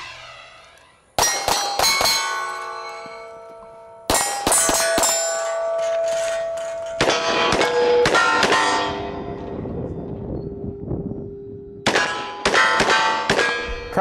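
Pistol fired in quick strings of shots at steel targets, the plates ringing with clear, sustained tones after the hits. Four strings of shots, starting about a second in, around four seconds, around seven seconds, and near the end, with the ringing trailing on between them.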